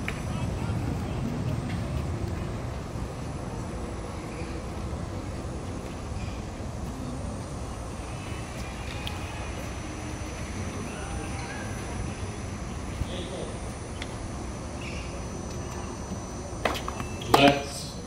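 Steady outdoor low rumble with faint background chatter, then near the end a tennis ball struck by racquets twice in quick succession, the second hit loudest and accompanied by a player's short grunt.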